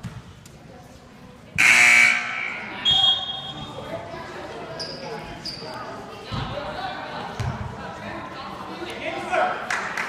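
Inside a gym during a basketball game, a loud buzzer sounds for about half a second around a second and a half in, and a short high whistle follows a second later. Later a basketball thuds twice on the hardwood floor, against a steady murmur of voices from the benches and the crowd.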